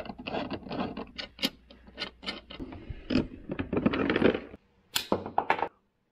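Irregular metallic clicks, taps and scrapes of a screwdriver working the terminal hardware of a battery's circuit breaker, with cables and parts being handled. The work is to undo a loose connection that had been arcing. The sounds cut off abruptly just before the end.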